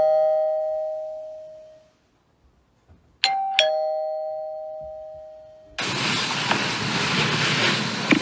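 Two-note ding-dong doorbell chime. The tail of one chime fades out over the first two seconds, and a second ding-dong rings about three seconds in, its two tones ringing out and fading. Near six seconds a steady rush of noise cuts in suddenly.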